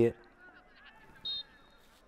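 A referee's whistle gives one short, high blast about a second and a quarter in, over faint stadium ambience.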